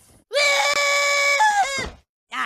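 A cartoon boy's high-pitched scream, Butters Stotch's scream from South Park, dubbed over Buttercup. It is held on one pitch for about a second, then breaks and falls away near the end.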